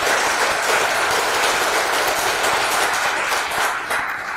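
Audience applauding: dense, steady clapping that begins to thin out near the end.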